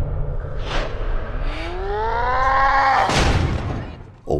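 Slow-motion film sound design: a drawn-out, deep tone that rises in pitch over about two seconds, set among short whooshes and a steady low drone. It is the stretched, slowed sound that renders a character's heightened perception of the moment.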